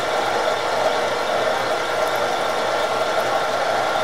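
Bridgeport vertical milling machine running a straight-across cut under power feed: a steady whir of the spindle with the end mill cutting through the workpiece.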